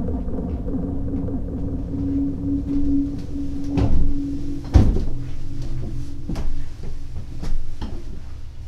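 Horror-film sound design: a low rumbling drone with a held tone, broken by several sharp knocks or bangs, the loudest about four to five seconds in.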